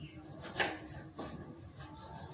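Kitchen knife cutting onions on a wooden cutting board, with two short knocks of the blade against the board about half a second apart.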